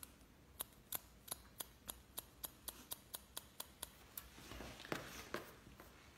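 Hair-cutting scissors snipping into the ends of a bob in quick succession, about a dozen short snips at roughly four a second: point cutting the tips to soften them. Near the end, softer rustling of hair with a couple more snips.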